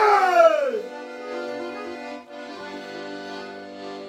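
Piano accordion holding long sustained chords. Over the first second a man's loud shout falls in pitch and fades out, and it is the loudest sound.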